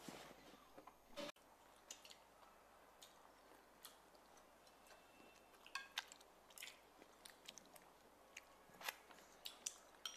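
Near silence broken by faint, scattered clicks and soft chewing: chopsticks tapping on rice bowls while people eat.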